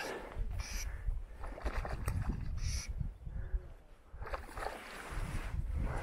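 Short, irregular splashes of a hooked cutthroat trout thrashing at the lake surface, several in the first three seconds, over a low, uneven rumble.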